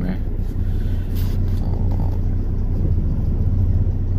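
Steady low rumble of a car's engine and road noise heard from inside the cabin while driving.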